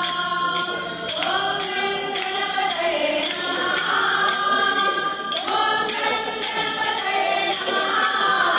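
A group of women singing a devotional song in chorus, with small brass hand cymbals struck in a steady beat about twice a second.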